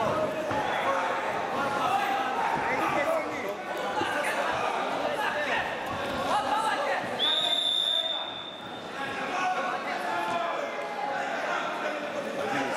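Voices of spectators and coaches calling out, echoing in a large sports hall. About seven seconds in, a single steady whistle blast lasts under a second: the referee stopping the action.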